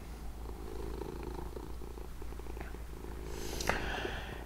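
A domestic cat purring steadily as it is stroked.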